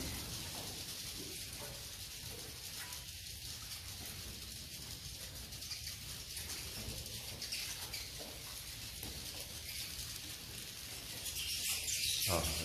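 A flock of edible-nest swiftlets giving a continuous, high-pitched twittering of dense clicking chirps, with some wing flutter, growing louder near the end.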